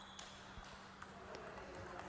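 Faint, sparse clicks of a celluloid-type table tennis ball struck by bats and bouncing on the table during a serve and rally, heard in a large hall.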